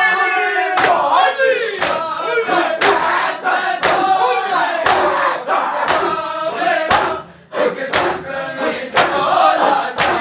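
A group of men doing matam, slapping their chests in unison about once a second, with a crowd of male voices chanting a mourning noha over the slaps.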